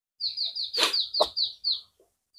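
A bird calling: a quick run of about eight high chirps, each sliding downward, at an even pace. Two short sharp clicks sound near the middle.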